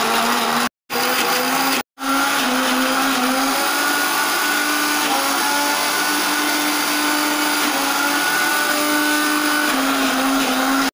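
Electric kitchen mixer grinder running at speed, grinding spinach chutney in its steel jar, a steady motor whine whose pitch wavers slightly under the load. The sound cuts out twice, briefly, within the first two seconds.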